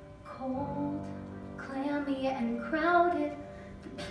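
A girl's voice singing a slow musical-theatre ballad over a steady instrumental accompaniment, the sung phrase ending shortly before the end.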